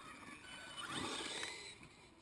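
A vehicle passing close by, its sound swelling to a peak about a second in and then fading, with a few short squeaky slides in pitch.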